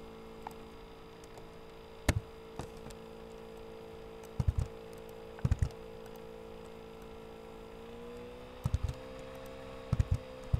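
Computer mouse and keyboard clicking, once and then in quick groups of two or three, while terms are copied and pasted in an equation editor. Under it runs a steady electrical hum that rises slightly in pitch near the end.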